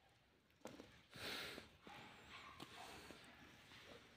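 Faint scratching and clicking of soil and grit being handled among rocks, with a short breathy hiss about a second in.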